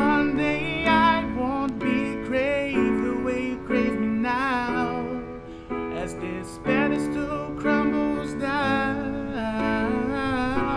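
A man singing long, wordless notes with vibrato over chords played on a keyboard.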